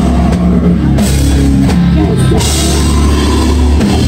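A heavy rock band playing loud: distorted guitars and bass over drums and cymbals, with no singing.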